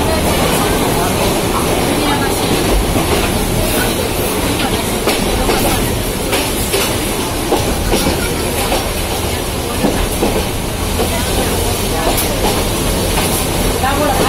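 A Yangon Circular Railway passenger carriage running along the track, heard from inside: a steady rumble and rattle with irregular knocks from the wheels and body.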